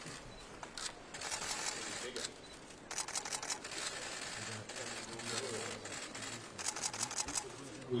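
Camera shutters clicking in quick bursts, a dense run about three seconds in and another near the end, with faint voices of the gathered group underneath.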